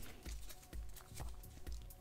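Faint clicking of trading cards being flipped through by hand, over a low thump that recurs about twice a second.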